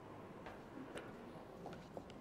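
A few faint, unevenly spaced clicks over low room hum.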